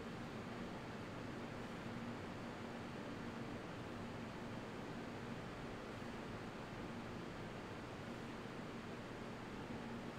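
Steady fan noise: an even whooshing hiss with a faint low hum.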